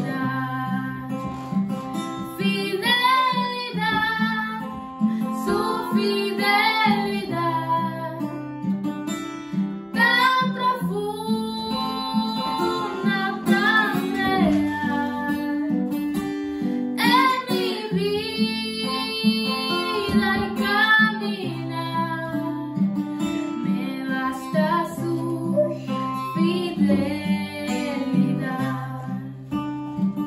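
A young woman singing a Spanish-language worship song, accompanied by an acoustic guitar.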